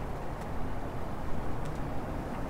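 Steady low background rumble with no speech, room or ambient noise in a pause between lines.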